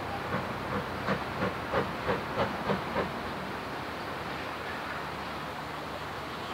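GWR Small Prairie tank locomotive No. 5542 working steam, with a run of even exhaust beats about three a second for some three seconds. The beats then stop, leaving a steady hiss of steam.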